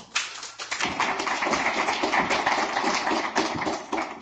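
Audience applauding, a dense run of many hand claps.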